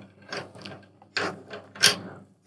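Snare drum tension rods being turned by hand into their lugs, a string of short scraping and rubbing sounds, loudest near the end: the finger-tight first step of tuning the bottom head.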